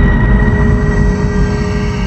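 Loud, low rumbling drone with a few steady held tones over it: a horror-film sound effect in the soundtrack.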